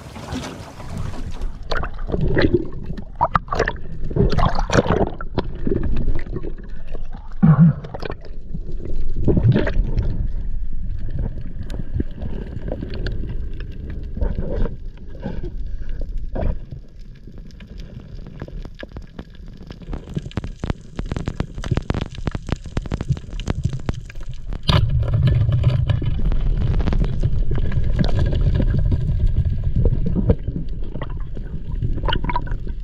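Water splashing and gurgling around a spearfisher entering the sea and swimming at the surface, then the muffled sound of underwater as he dives with a speargun: a quieter stretch with many faint clicks, and a louder low rush of water from about five seconds before the end.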